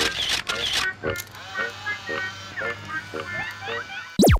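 Background music: a loud, rhythmic beat that stops about a second in, followed by quieter, sparse short notes and brief sliding tones.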